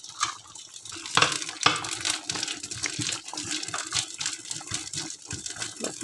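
Green beans sizzling in hot olive oil in a frying pan: a steady crackle with scattered pops, two of them louder about a second in.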